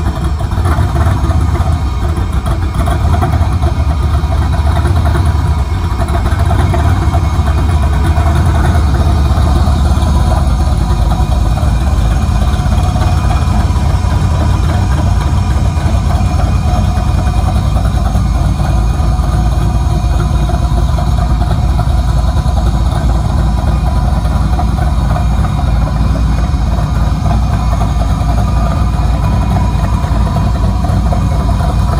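DeLorean DMC-12's V6 engine running steadily at idle, its first run after sitting unstarted for about three months.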